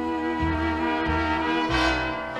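1940s dance orchestra on a 1943 Capitol 78 rpm recording playing an instrumental passage of a slow ballad: a long held melody note with vibrato over sustained chords and a bass note about every half second, with the line moving to a new note near the end.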